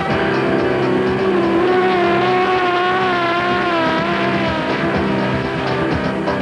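Offshore racing catamaran's engines running flat out at around 100 mph, a loud steady high drone whose pitch wavers slightly as the hull runs over the water.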